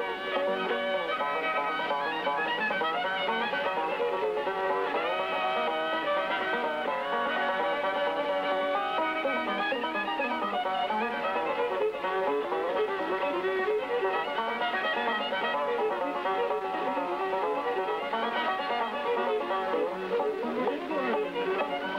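Fiddle and five-string banjo playing a bluegrass tune together, the bowed fiddle carrying the melody in quickly changing notes over the banjo's picking. The old recording sounds thin, with little bass or treble.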